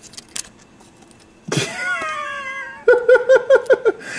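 Domestic tabby cat at close range: a few light clicks at first, then a sudden long meow that falls slightly in pitch, followed by a quick run of short chirps.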